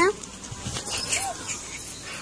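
A cat giving a short, faint mew about a second in, over light scuffling from inside a fabric play tunnel.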